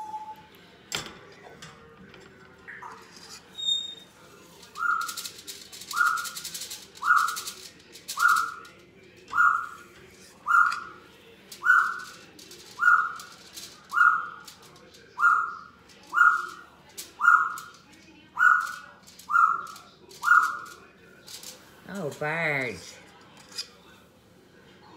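Pet bird calling with a short whistled note repeated about once a second, around fifteen times, then one brief wavering call near the end. Some light crackling rustles sound alongside the first few notes.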